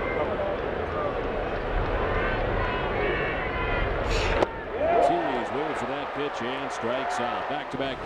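Ballpark crowd noise, then a sharp crack of a baseball bat meeting the ball on a swing about four seconds in. The crowd sound then drops away and music with wavering tones and a ticking beat comes in.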